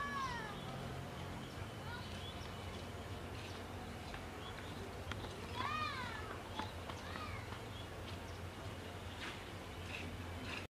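A few short animal calls, each rising and then falling in pitch: one at the start, two close together about six seconds in and another a second later, over a faint steady low hum.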